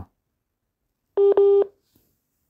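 Two short, buzzy electronic beeps in quick succession, a steady note with overtones, starting about a second in.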